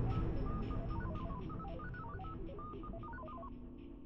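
Sound-design effect of rapid electronic beeps hopping up and down in pitch, like a computer readout, stopping shortly before the end. Underneath, a low music drone fades away and light ticks repeat about five times a second.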